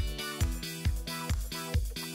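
Background music with a steady kick-drum beat, about two beats a second, under held chords.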